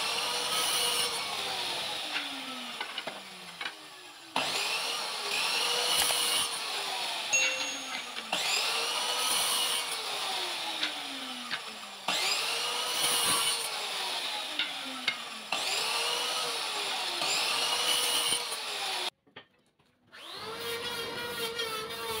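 Electric compound miter saw cutting hardwood strips to length, over and over. Each cut goes the same way, about every four seconds: the motor starts, the blade runs through the wood, and it winds down with a falling pitch. A brief dropout comes near the end.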